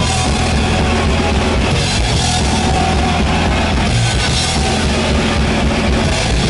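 Thrash metal band playing live and loud: heavily distorted electric guitars over a drum kit, with fast, steady kick-drum beats.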